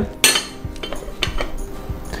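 Ceramic bowls and plates clinking as they are handled on a tabletop: one sharp clink about a quarter second in, then a few quieter taps.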